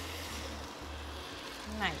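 Vegetable stock with coconut milk poured in a steady stream from a measuring jug into a hot pot of rice and black-eyed peas: a faint, even pouring noise over a low hum.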